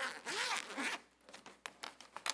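A zipper on a book cover being drawn open, a long zip over about the first second, followed by short rustles and clicks as the cover is handled and opened.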